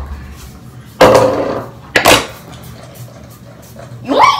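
Two sharp clattering knocks about a second apart, objects such as a plastic hairbrush being put down on a hard bathroom countertop.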